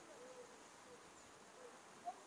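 Near silence: faint outdoor background with a few faint, brief pitched sounds.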